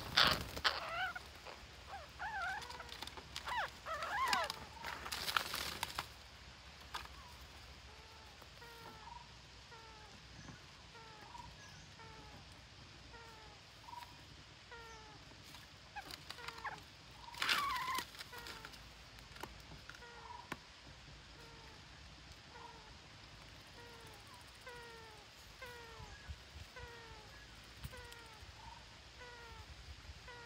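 Green parakeets calling with loud squawks and a wing flutter in the first few seconds and again briefly about 17 seconds in. Between them a faint short falling call repeats about once a second.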